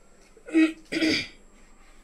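A woman clearing her throat: two short, loud coughing bursts a little after half a second in, the second slightly longer than the first.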